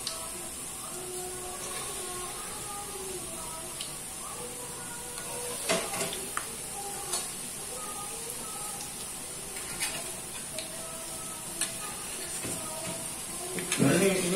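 Peyek batter (dried-shrimp cracker batter) frying in hot oil in a wok with a steady sizzle. A few light metal clicks come from the ladle and spatula touching the pan.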